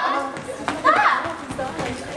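Girls' voices shouting and chattering as they play, with one loud cry about a second in.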